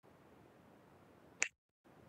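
A single sharp click about one and a half seconds in, after which the sound cuts out to dead silence for a moment, over a faint steady hiss.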